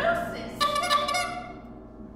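The ensemble's loud music dies away, then about half a second in a short honk-like pitched sound comes from the performers and fades out within a second.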